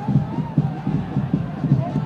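Football match broadcast ambience: a low murmur of crowd noise with faint distant voices from the pitch.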